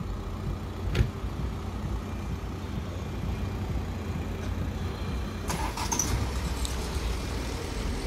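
Street traffic: a steady low rumble of cars on a city boulevard, with a short click about a second in.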